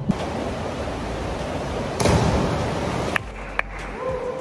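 A diver jumps off a high diving board over a steady rushing noise, and hits the water with a loud splash about two seconds in. The sound cuts off suddenly a little after three seconds, and two short clicks follow.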